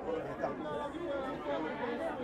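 Indistinct background chatter of several people talking over one another, with no single voice standing out.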